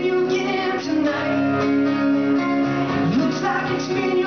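Live acoustic duo: two acoustic guitars strumming under a man's voice holding long sung notes.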